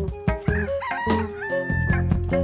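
A rooster crowing once: the call rises and ends in a long held note near the end. Background music with a steady beat plays underneath.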